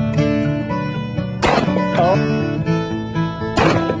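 Two shotgun shots about two seconds apart, each a sharp crack with a short ringing tail, over background music with acoustic guitar.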